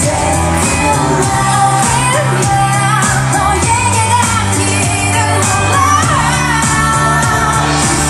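Pop dance song by a girl group, women singing into microphones over a steady beat and bass line, loud through the hall's speakers.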